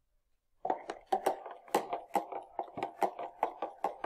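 A metal spoon clicking and scraping rapidly against a small cup as ginger is scooped out and poured, starting about half a second in after a brief silence.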